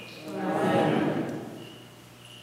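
A man's voice chanting one long, held liturgical phrase that swells about half a second in and fades out by a second and a half.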